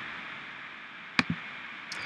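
A single sharp click about halfway through, with a fainter click just after, over a steady low hiss. Typical of a computer mouse button being pressed and released while closing a dialog in the software.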